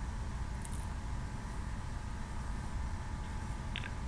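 Steady low rumble with a faint hiss: launch-pad ambience around a Falcon 9 as it vents cryogenic vapour during its final pre-launch chill-down.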